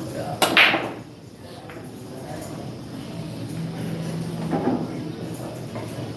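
Pool break shot: the cue tip strikes the cue ball with a sharp crack about half a second in, and the racked balls clatter apart at once. Fainter clicks follow as the balls knock into each other and the cushions.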